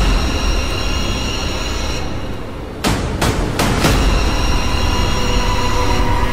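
Horror trailer soundtrack: a deep, steady rumbling drone under high held tones, with four sharp hits about 0.4 s apart around three seconds in.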